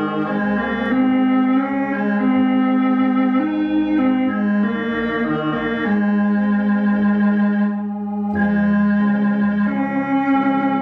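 Elka X19T electronic organ playing a slow hymn in A-flat major in held, sustained chords that change about once a second. Just before eight seconds in the chords briefly thin out, then a new chord comes in with a deeper bass note.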